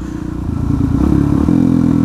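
Motorcycle engine running under way, getting a little louder over the first second and then holding a steady note.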